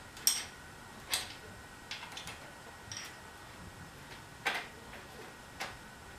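Sparse, irregular metallic clicks and ticks, about seven in all with the strongest about four and a half seconds in, from a 5 mm Allen key working the bicycle seat-post clamp bolts loose and the saddle being worked free of the clamp.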